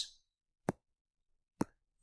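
Two brief, sharp clicks about a second apart, against near silence.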